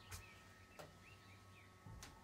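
Near silence with faint bird chirps: a few short calls in the first second and a half, and a couple of faint clicks.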